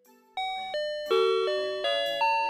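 FamilyMart's electronic entrance door chime playing its melody, a tune of bell-like tones that are each struck and then fade, starting about a third of a second in.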